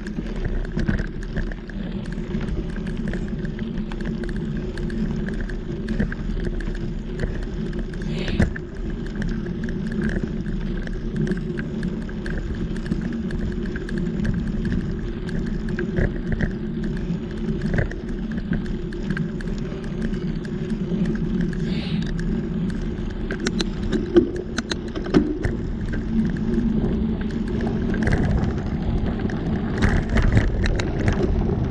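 Mountain bike rolling along a dirt singletrack, heard from a handlebar-mounted camera: a steady rolling noise from the knobby tyres, with frequent clicks and rattles as the bike jolts over bumps.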